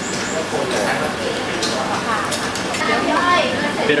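Speech in a busy indoor food court: talking throughout, with a few light clicks that sound like cutlery on dishes.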